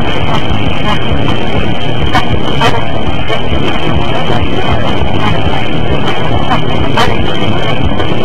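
A loud, harsh, heavily distorted wall of noise that holds steady, broken by a few sharp clicks.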